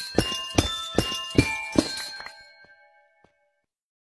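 Small toy electronic keyboard played: a quick run of about eight bell-like notes, each ringing on and overlapping the next, fading out about two and a half seconds in.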